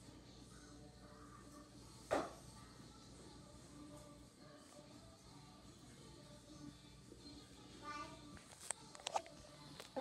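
Quiet room with faint background music, broken by one sharp knock about two seconds in. Near the end come a few light taps and a brief faint voice.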